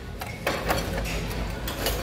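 A small wooden decorative wagon knocking and clicking against a wire metal shelf as it is handled and pushed back onto the shelf: a string of irregular light knocks and clicks.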